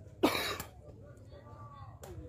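A single loud cough close to the microphone, about a quarter second in, followed by faint voices from the crowd.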